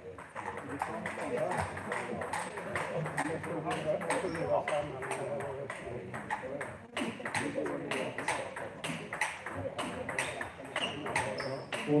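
Table tennis rally: the ball clicking sharply and in quick succession off the bats and the table, with voices murmuring in the hall.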